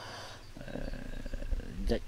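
A man's low, drawn-out hesitation sound, a creaky 'euh', while he searches for a word. It is quieter than his speech around it.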